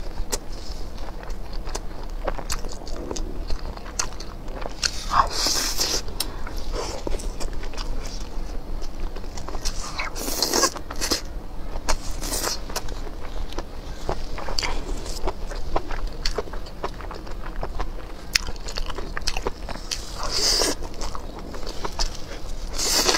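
Close-miked chewing and biting of spice-coated skewered food, full of wet mouth clicks, with a few louder mouth noises under a second long, about 5, 10, 12 and 20 seconds in.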